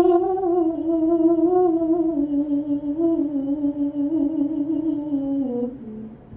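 A teenage girl's voice in melodic Quran recitation (tilawah), holding one long drawn-out note that steps slowly down in pitch and ends just before the close.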